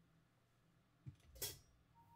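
Near silence with a faint low hum. About a second in comes a soft low thump, then a single brief, bright stick hit on the drum kit that rings shortly.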